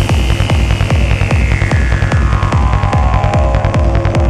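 Psytrance music: a fast, driving kick and rolling bassline in an even throbbing pulse, with a high synth tone sliding slowly down in pitch over the bar.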